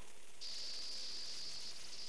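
Faint steady background hiss, with a thin high-pitched hiss joining it about half a second in and holding steady.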